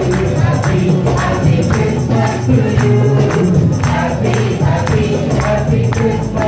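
Live Christian worship song: a man sings lead into a microphone, with other voices joining, over acoustic guitar and a tambourine struck on the beat.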